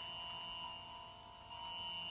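Faint steady electronic tones: a high whine over a pair of lower held tones. The high tone briefly fades about a second in and then returns.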